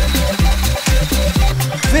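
Electronic music with a steady beat of kick drums over deep bass.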